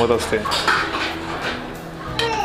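Steel kadai and utensils clinking against the grate of a lit gas stove: a few light metal knocks.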